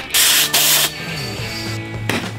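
Compressed air hissing in two quick bursts lasting under a second, from the air hose of a PVC air cannon charged to 75 psi. Background music with steady low notes runs underneath.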